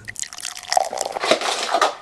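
Liquid laundry detergent poured from a jug into a top-loading washing machine, splashing and trickling, louder in the second half.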